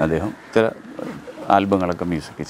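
A man speaking in short bursts.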